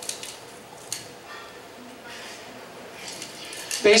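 A few light clicks and clinks, the sharpest right at the start and about a second in, over faint voices in the room.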